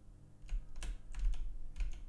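Several quick, irregular keystrokes on a computer keyboard, starting about half a second in, as keys are pressed to move through open windows in a task switcher.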